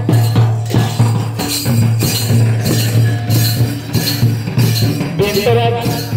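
Traditional Santali dance drumming: large barrel drums beaten in a steady, even rhythm, with small hand cymbals clinking along.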